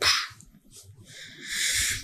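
A man breathing between sentences: a short breath at the start, then a longer, louder intake of breath about a second and a half in, just before he speaks again.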